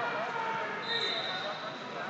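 Background chatter of voices echoing in a large sports hall, with a brief high steady tone about a second in.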